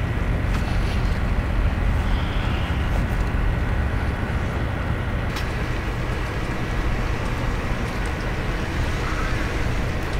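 Steady low rumble with a hiss over it, unchanging throughout, with a faint thin whine and one small click about halfway through.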